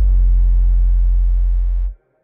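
Final held deep bass note of a bass-boosted hip-hop track, loud and steady, cutting off suddenly near the end.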